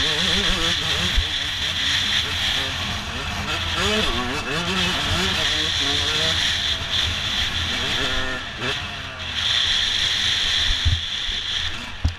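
Yamaha YZ 125 two-stroke single-cylinder engine revving up and down as the bike is ridden hard through the gears, with a brief throttle-off dip about nine seconds in. Strong wind buffets the helmet-mounted microphone throughout.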